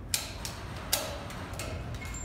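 Two sharp clicks of rope-access hardware being clipped on, about a second in and near the start, as a jumar and carabiners are attached at the anchor slings.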